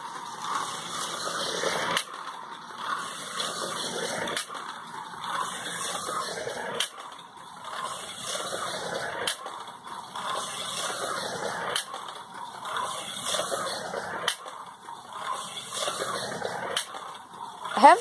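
Small electric slot car running laps on a plastic slot-car track: a whirring hiss of motor and wheels that swells and dips every few seconds as the hand controller speeds it up and slows it, with scattered sharp clicks.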